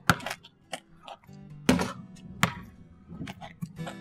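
A basketball bouncing on pavement a handful of times at an uneven pace, sharp thumps over steady background guitar music.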